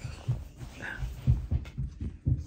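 A few soft, low thumps at uneven intervals with faint rustling in between.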